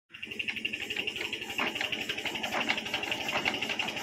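Single-cylinder diesel engine of a Sifang walking power tiller running at a steady idle, with a fast, even knocking beat.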